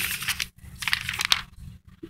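Sheets of paper rustling and crinkling as they are handled and shuffled right next to the microphone, in a few short scrapes.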